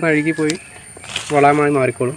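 Speech only: two short spoken phrases, with a brief click between them.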